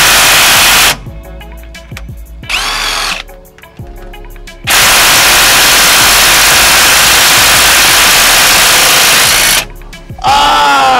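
Cordless drill running hard on a gearbox plug of a Unimog, in two long loud runs, the first ending about a second in and the second from about halfway to near the end, to open the gearbox and check its oil. Between the runs come a few clicks and a brief sound that rises and falls in pitch.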